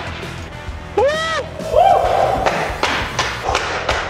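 A man's strained vocal exhale and groan after a heavy set of cable rows, over background music. A few sharp thuds follow in the second half.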